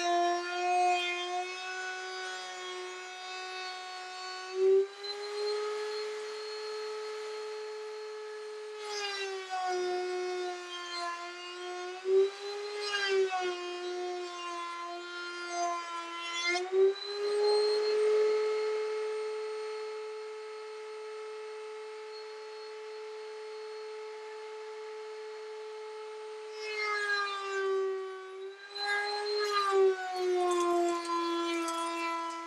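Router running in a router table with a steady high whine; about four times its pitch sags and a rasping cutting noise joins in as a wooden strip is fed through the cutter, and the pitch climbs back when it runs free.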